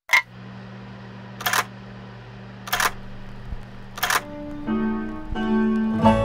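A vinyl record starting to play on a turntable: a sharp click as it starts, then a steady low hum with a loud pop recurring about every 1.3 seconds. About four seconds in, the song's instrumental intro begins under the crackle.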